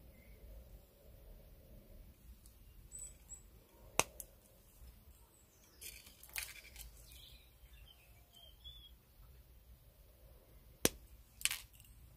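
Flush cutters snipping copper jewellery wire: one sharp snip about four seconds in, and another sharp click near the end, with faint rustling of the wire being handled in between.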